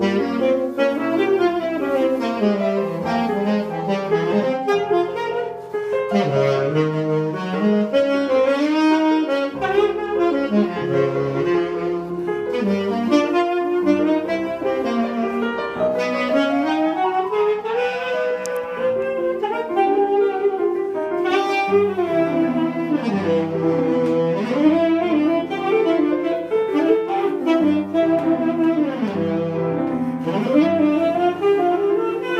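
Saxophone playing a flowing, ornamented jazz melody over classical grand piano accompaniment on an 1890s Carl Bechstein Saal grand.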